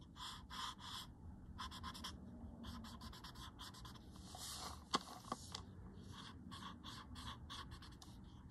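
Short, quick strokes of a pointed tool rubbing on a paper tile, several a second, as graphite shading is worked. A sharp click about five seconds in.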